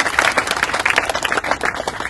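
Audience applauding: dense, steady hand-clapping.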